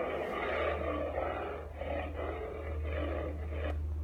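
Recorded lion roaring and growling, played back through a small device speaker, in a run of rough swelling pulses that starts abruptly.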